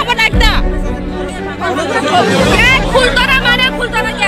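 Several people's voices talking over one another, raised and excited, with a steady low hum underneath.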